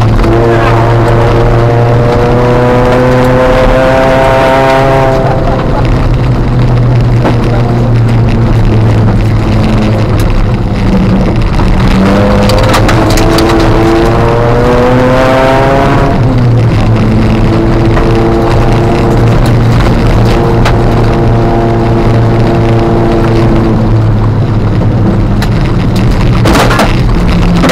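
Ford Fiesta ST150 rally car's engine heard from inside the cabin, revving up hard under acceleration, dropping away about five seconds in, climbing again from about twelve to sixteen seconds, then running at a steadier pitch.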